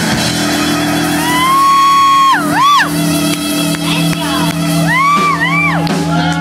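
Live rock band holding a sustained closing chord while a high voice wails over it: one long held note that swoops down and back up, then two shorter rising-and-falling wails near the end.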